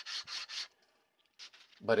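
Hand sanding a curved wooden router-plane body by hand, quick back-and-forth strokes about five a second that stop about half a second in.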